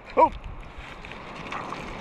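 Wind buffeting the microphone over water lapping in the shallows, a steady rushing noise with a low rumble, after a short "Oh!" just after the start.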